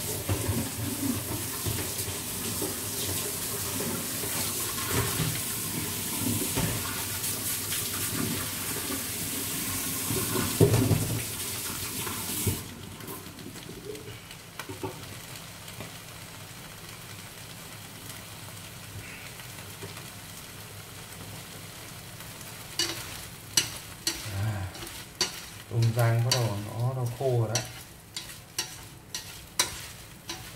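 Freshwater shrimp sizzling as they dry-fry in a pan: a loud, even sizzle for about the first twelve seconds, then suddenly much quieter. Over the last several seconds, chopsticks knock and scrape against the pan as the shrimp are stirred.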